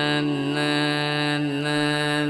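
Carnatic vocal music: the singer holds one long, steady note, with violin accompaniment.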